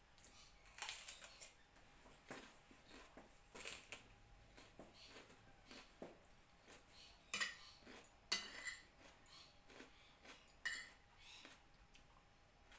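A metal fork clinking and scraping against a ceramic dinner plate while fish is picked apart: a series of separate light clinks and scrapes, the loudest a little past halfway.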